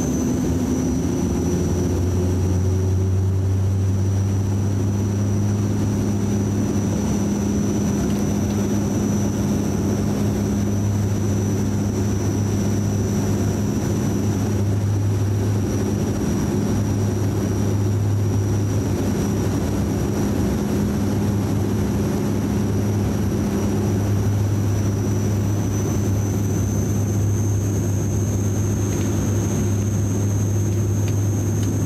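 Cabin drone of a DHC-8 Q400's Pratt & Whitney PW150A turboprops and six-bladed propellers: a steady low propeller hum with a thin high engine whine above it. The hum shifts to a new pitch about a second in, and the whine rises slightly near the end.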